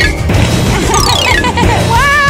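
Background music with cartoon sound effects laid over it: a quick falling glide early on, then a crash.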